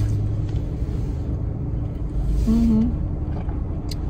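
Low steady rumble of a car heard from inside the cabin, with a brief hummed voice note about two and a half seconds in.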